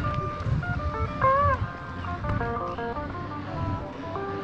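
A street musician's guitar playing a melody of held single notes, some bent up and down in pitch, with a low rumble underneath.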